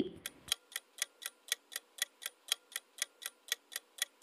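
Countdown-timer ticking sound effect: sharp, even ticks at about four a second.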